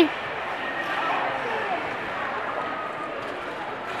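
Echoing indoor arena ambience: a steady hiss with a faint murmur of distant voices.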